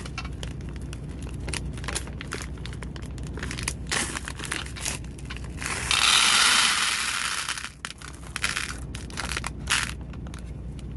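Handling of a plastic zip bag of green agate stone beads, with crinkles and small clicks. About six seconds in, the beads pour out of the bag into a glass dish in a loud rush of clinking that lasts about two seconds, followed by a few more scattered clicks and rattles.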